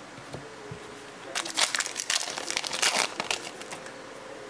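Foil wrapper of a Topps Fire trading card pack crinkling and tearing as the pack is opened by hand, in a dense burst starting about a second and a half in and lasting about two seconds.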